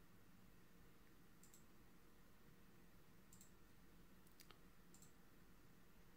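Near silence: room tone with a few faint, sharp computer mouse clicks spread through it.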